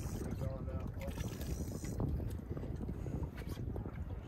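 Wind buffeting the microphone and water sloshing against the hull of a small fishing boat, a steady rough noise with many small irregular clicks and slaps.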